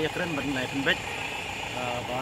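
A man's voice speaking Khasi in short phrases, over a steady background hum.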